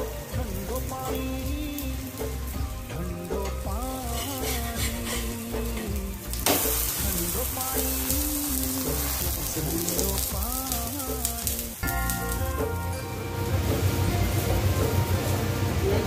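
A maize-flour roti sizzling as it fries in oil on a flat iron pan, with a song playing over it. The sizzle jumps up suddenly about six seconds in, when the spatula presses the bread into the hot oil.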